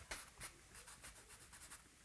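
Compressed charcoal stick scratching faintly on newsprint in shading strokes, with two louder strokes in the first half second and softer ones after.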